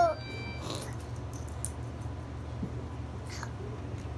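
A baby's short high-pitched squeal right at the start, then a steady low hum with a few faint clicks and taps.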